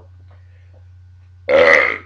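A man's loud burp lasting about half a second, coming about one and a half seconds in after a short quiet pause.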